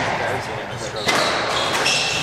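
Squash rally: the ball is struck and smacks off the court walls, with sneakers squeaking in short high-pitched chirps on the hardwood floor, over background voices.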